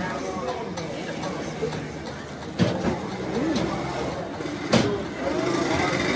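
Busy street-market ambience: background voices and the engine of a motor scooter passing close by, with two sharp knocks, one about two and a half seconds in and one near five seconds.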